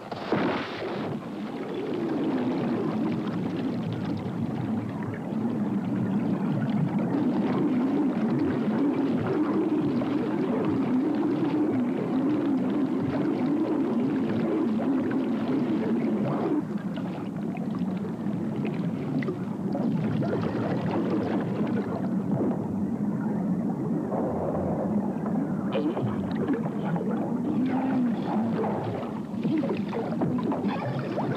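A sudden splash as a man plunges through lake ice, then a muffled, wavering underwater rumble of churning water and bubbles as he thrashes beneath the ice.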